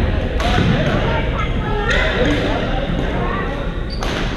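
Badminton rackets hitting a shuttlecock in a rally: two sharp smacks about a second and a half apart, with people talking throughout.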